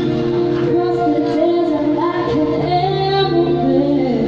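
Female lead vocalist singing with a live band of electric keyboard and electric guitar, holding long sustained notes; a low bass note comes in about two and a half seconds in.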